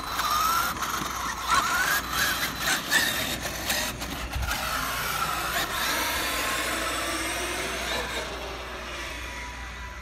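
Traxxas X-Maxx RC monster truck's brushless electric motor and drivetrain whining, the pitch rising and falling with the throttle as the truck speeds off down the road. There are sharp clicks and crackle in the first few seconds, and the whine fades over the last few seconds as the truck gets farther away.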